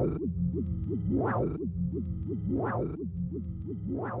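Electronic techno track in a drumless breakdown: a steady low synth bass under a quick repeating run of short falling synth notes, with a swelling sweep rising and falling about every second and a half.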